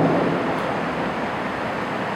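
Steady background noise: an even rush with no distinct events.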